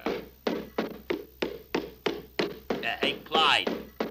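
Cartoon sound-effect footsteps of a big animated dragon: a steady run of hollow thuds, about three a second. A short vocal sound comes about three seconds in.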